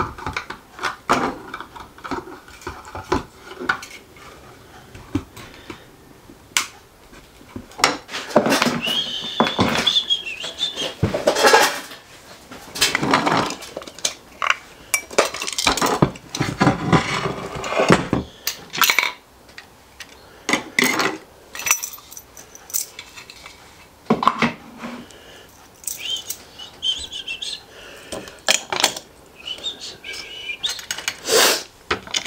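Hard 3D-printed plastic parts and metal pieces being handled, pulled apart and fitted together on a workbench: irregular clicks, knocks and clatter with some scraping, and a couple of short squeaks, about nine seconds in and near the end.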